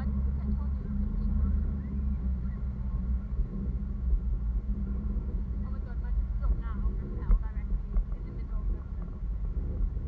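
Wind rumbling steadily on an action camera's microphone while hanging under a parasail, with short voices breaking in between about six and eight seconds.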